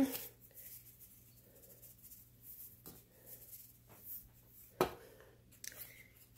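Quiet handling of seasoning containers over a steel bowl: faint sprinkling and a few soft clicks and taps, the sharpest about five seconds in, over a faint steady low hum.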